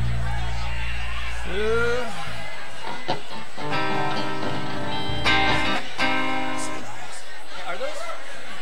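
A live band playing loosely between songs: a held low bass note, then a few sustained guitar chords ringing for about three seconds, with a voice calling out briefly twice.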